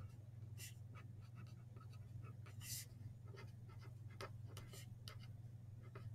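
Pen writing on a paper worksheet: faint, irregular scratches of the strokes as words are written, over a steady low hum.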